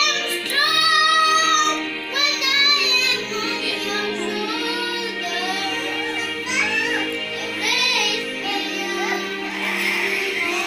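A young boy singing a solo song with wavering, held notes over steady instrumental backing music.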